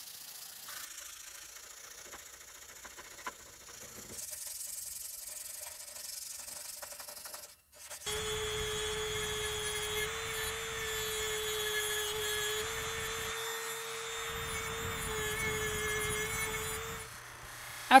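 Faint hand-sanding of a hardened steel blade with a sandpaper pad. About eight seconds in, a handheld rotary tool starts and runs at a steady high whine for about nine seconds while cleaning up the blade.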